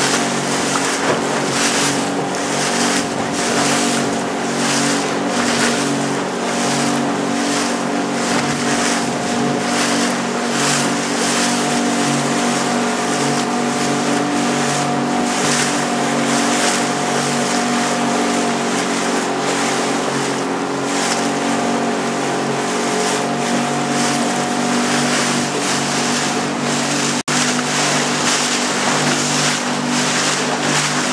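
A small motorboat's engine running steadily, with water rushing and splashing along the hull in repeated surges. There is a brief dropout in the sound near the end.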